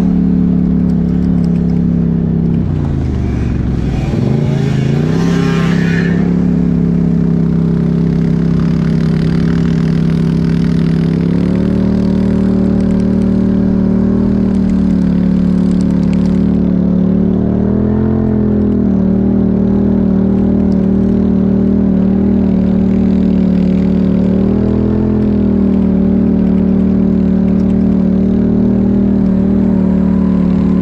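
ATV engine running steadily at cruising speed on a sand trail. A few seconds in, its pitch drops and then climbs back as the quad slows and speeds up again. Later there are a couple of brief rises in revs.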